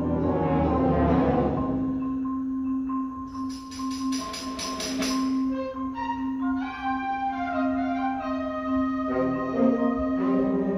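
Concert band playing a quiet, sustained passage: a low note held throughout, with mallet-percussion notes stepping over it and a run of sharp high strikes, about four a second, near the middle.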